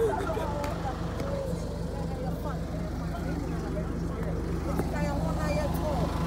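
Faint voices of people talking at a distance over a steady low hum.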